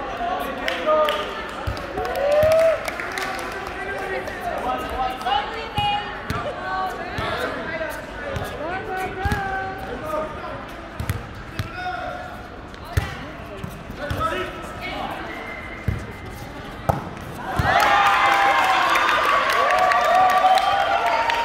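Volleyball rally in a large indoor hall: scattered thumps of the ball being struck and bouncing, over players' chatter and calls. About three seconds before the end the voices grow much louder as players shout at the end of the point.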